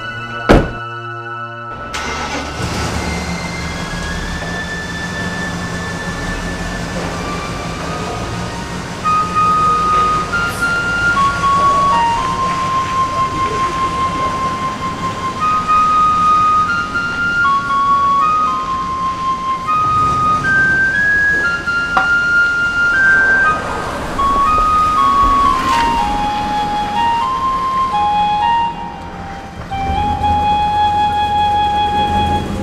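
A car door shuts with a sharp thunk, then a Nissan SUV's engine runs steadily as it drives off. Background music with a melody of held notes comes in about nine seconds in.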